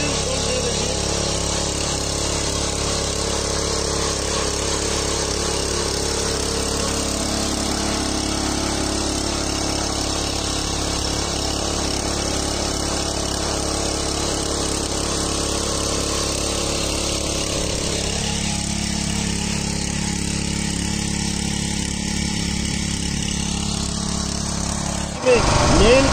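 Small petrol engine of a walk-behind power tiller running steadily under load while its rotary tines churn grass and soil. About two-thirds of the way through, the sound shifts to a deeper tone with the low hum stronger.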